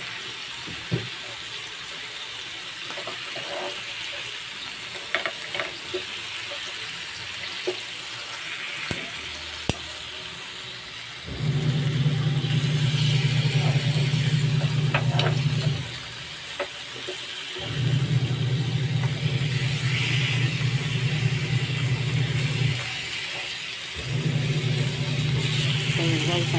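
Pork chops sizzling in a hot pan, with scattered light clicks of metal tongs. From about 11 seconds in, a loud low mechanical hum comes on and off three times, each spell lasting about four to five seconds, over the sizzle.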